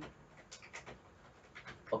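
Faint scattered clicks of a computer keyboard as a few keys are typed, over quiet microphone hiss.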